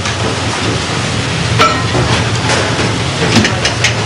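Steady kitchen background noise with a low hum, broken by a few light clinks and knocks of pans and utensils.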